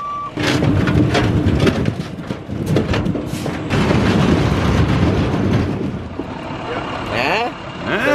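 Dump truck tipping its bed and unloading large boulders: the engine runs while the rocks slide and tumble out in a long rumbling clatter full of knocks. It eases off about six seconds in.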